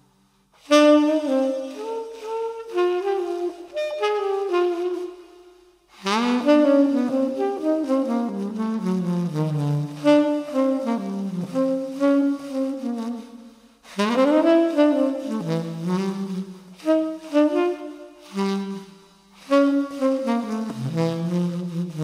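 Unaccompanied tenor saxophone playing a jazz melody in phrases, with short breaks between them about six, fourteen and nineteen seconds in. Two of the phrases open with an upward slide into the note.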